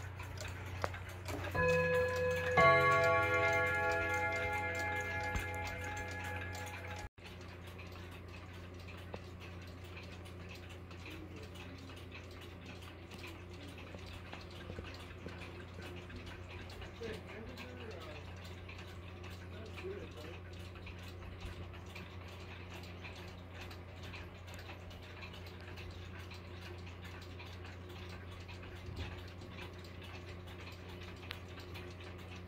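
A clock's gong struck, ringing out as a chord of clear tones that fades over about four seconds, with a lighter tone just before it; the sound cuts off about seven seconds in. After that, a cuckoo clock's brass movement ticks faintly over a low hum.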